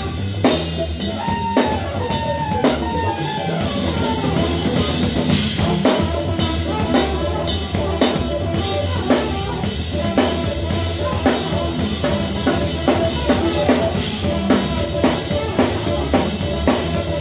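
Live funk band playing: a drum kit keeping a steady beat with electric bass, keyboards and a melodic line on top.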